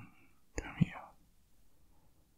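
A man's voice close to the microphone: one brief, soft, breathy whispered sound about half a second long, starting about half a second in.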